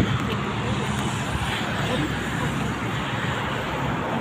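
Steady road traffic noise from cars passing on the road alongside, a continuous even hiss with no single vehicle standing out.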